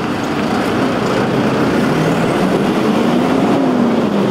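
Fire truck's engine running as the truck pulls out of the station garage, a steady low drone with its pitch rising a little and falling back near the end.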